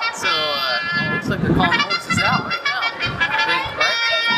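Voices over background music with long held notes.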